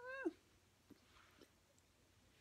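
A single short animal call, about a third of a second long, right at the start, sliding down in pitch at its end. A couple of faint soft clicks follow.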